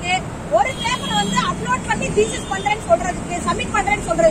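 A person talking, with a steady low rumble of background noise behind.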